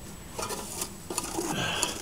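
Dry herb fuel being pushed into the open metal canister of a beekeeper's smoker: light rustling with small clicks and scrapes of metal, denser toward the end.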